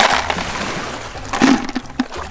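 Sea snail shells dropped into a plastic bucket, clattering against each other and the bucket wall. One clatter comes at the start and fades over about half a second, and a second sharp one comes about one and a half seconds in.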